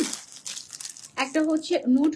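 Plastic product packets crinkling as they are handled, an irregular crackle over the first second, before a woman's voice comes in.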